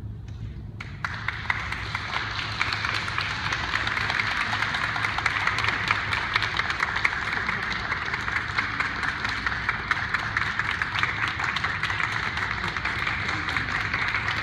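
Audience applauding. The clapping breaks out about a second in and carries on steadily, with a low hum underneath.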